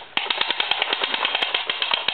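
Plastic John Deere toy truck being pushed across a rug, giving a rapid, even run of clicks from its moving wheels and parts.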